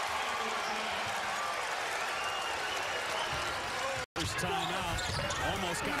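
Steady crowd noise in a basketball arena during live play, broken by a brief dropout about four seconds in where the footage is cut. After the cut, a commentator's voice comes back over the crowd, with some sharp knocks of the ball and shoes on the court.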